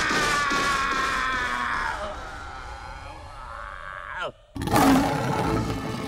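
A cartoon lion's long, high yell, fading out over the first two seconds. Then, after a brief cut-out, a loud lion roar starts about four and a half seconds in.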